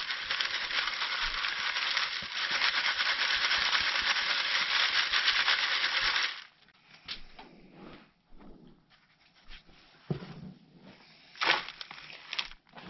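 Worm castings shaken back and forth in a wire-mesh sieve: a steady, gritty rattling hiss of fine compost grains sliding over the screen, stopping about six seconds in. After that come only faint, scattered rustles of the castings being handled.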